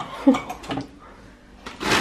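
Crumpled kraft packing paper rustling loudly as hands dig into a cardboard box, starting near the end. Before it, in the first second, a few soft knocks and a brief vocal sound, then a short lull.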